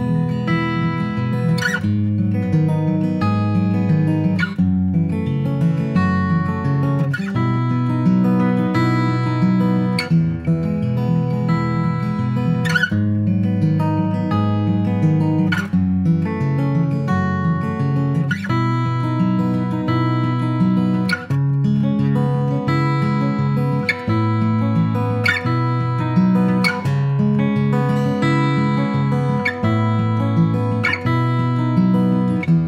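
A Martin Custom D-28 dreadnought acoustic guitar with an Adirondack spruce top and ziricote back and sides, played solo. Chords are struck about every second or two and left to ring, with picked notes between them.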